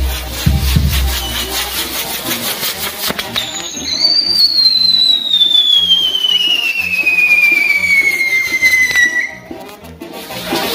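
Fireworks on a torito, a dancer-carried pyrotechnic bull frame, spraying sparks with a crackle. About three seconds in, a whistling firework starts and falls steadily in pitch for about six seconds before cutting off suddenly.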